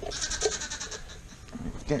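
A lamb bleating once, a high, quavering call that lasts about the first second.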